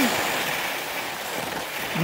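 Skis sliding over a groomed, hard-packed piste: a steady hiss of snow that slowly fades, with some wind on the microphone.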